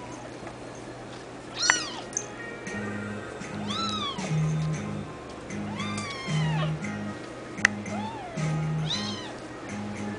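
Kitten meowing: short meows that rise and fall in pitch, about one every one to two seconds. From about three seconds in they run over background music with a repeating low bass pattern.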